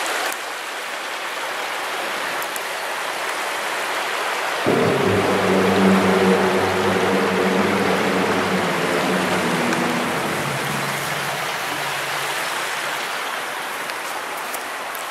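Shallow river running over stones in a steady rush. About a third of the way in, a low, steady hum of several tones starts suddenly, then fades away over the next six seconds or so.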